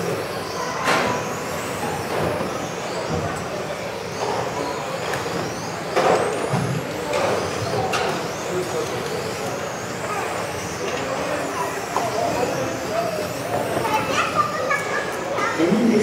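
Electric radio-controlled on-road cars racing around an indoor hall track: faint high motor whines rising and falling as they accelerate and brake, over the echoing noise of the hall, with a few sharp knocks. Voices come in near the end.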